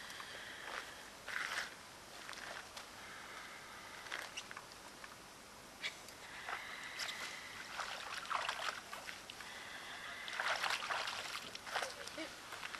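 Icy lake water sloshing and slush ice crunching as a person lowers himself into a hole cut in the ice, with scattered small knocks and crackles and a louder burst of them near the end.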